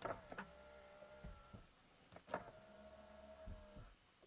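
Electric folding door mirror motor of a Kia Stonic, heard faintly from inside the cabin. It runs twice, with a switch click at the start of each run and a steady, even hum lasting about a second and a half: the mirror folding in and then back out.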